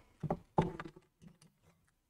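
Plastic clicks and knocks from a power cord's plug being pushed into a Ubiquiti PoE injector and the injector handled: a few short clicks in the first second and a half.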